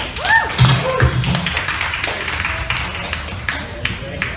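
Scattered applause from a small club audience as a song ends, with a short cheering whoop about a quarter second in.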